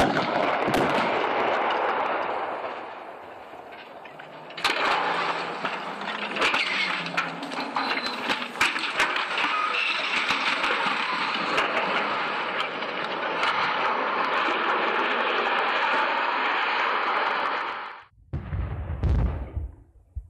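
Controlled-demolition explosive charges firing at the guy-wire anchors of a tall transmission mast: a sudden loud blast, then loud noise full of sharp cracks that runs on for many seconds and cuts off near the end. A few low thumps follow.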